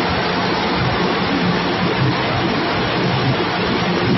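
Processing machinery with a hopper and elevator running in a shed: a steady rushing noise with a constant low hum.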